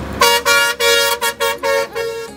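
Bus horn honking in a quick run of about seven short blasts, the last one held a little longer.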